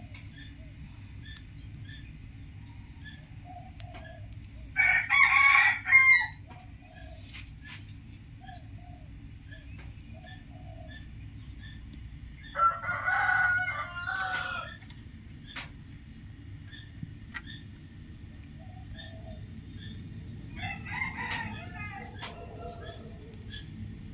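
A bird calling loudly twice, each call lasting a second and a half to two seconds and the second coming about eight seconds after the first, with a fainter third call near the end, over a steady low rumble.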